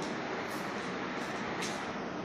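A steady rushing background noise with no clear source, with a brief hiss about one and a half seconds in.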